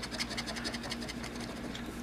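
A large coin is rubbed quickly back and forth over a scratch-off lottery ticket, making fast, even scratching strokes as it wears off the latex coating over a number.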